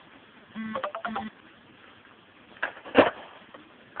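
A skateboard knocking on stone paving during an ollie attempt: a light knock and then a sharper one about three seconds in. Before that, two short vocal sounds.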